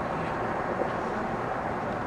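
Steady outdoor background noise, an even rumble and hiss with no distinct event standing out.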